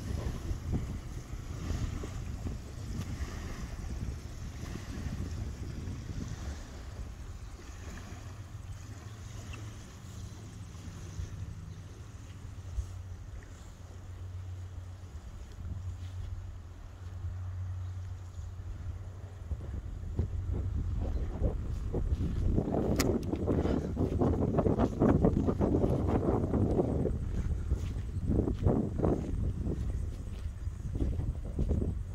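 Wind buffeting the microphone, a low rumble that turns louder and rougher for the last third or so.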